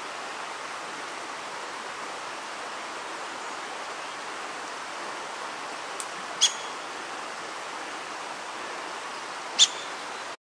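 A steady, even rushing hiss with almost no low rumble. It is broken by two short, sharp, high chirps about six and a half and nine and a half seconds in, the second the loudest sound here.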